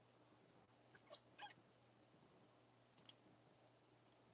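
Near silence: room tone, with a few faint clicks, two about a second in and two more around three seconds in.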